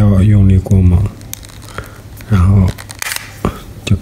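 A voice speaks, and between the words come sharp plastic clicks as the two halves of a Honda CR-V smart key fob's case are prised apart. The loudest snap comes about three seconds in, as the case comes open.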